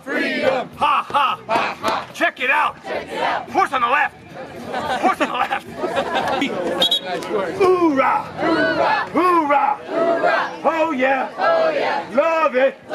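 A crowd of marchers shouting a chant together in rhythm, with a brief lull about four seconds in before the voices pick up again.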